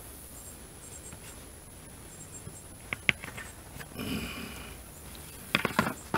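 Quiet outdoor background with a faint high steady tone and chirps. A metal fork gives a few light clicks and taps against a paper plate while working butter into a baked potato: a couple around the middle and a small cluster near the end as the fork is set down.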